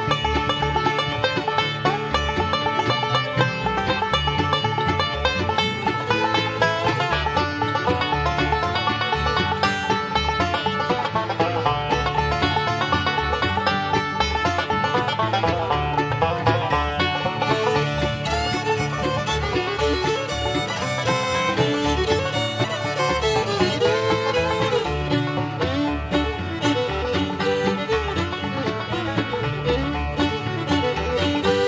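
Instrumental break of a bluegrass band: banjo and fiddle over rhythm guitar, mandolin and bass, with a steady driving beat and no singing.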